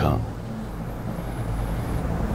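A steady low rumble of background noise with a faint high whine, just after a man's voice stops at the start.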